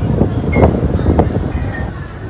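Wind buffeting the phone's microphone, a loud, uneven low rumble, with a couple of brief knocks about half a second apart.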